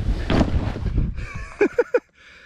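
Low rumble and wind noise from an inflatable tube sliding over grass, fading as the tube slows to a stop. Near the end come three short bursts of laughter.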